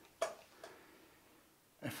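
A single short, sharp pop about a quarter of a second in, the studio flash heads firing as the flash meter triggers them through its sync lead to take an exposure reading.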